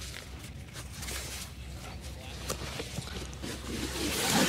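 Faint handling sounds, light rustling and a few soft taps, as a hard floor board is fitted into the fabric bed of a collapsible wagon, over a steady low background noise.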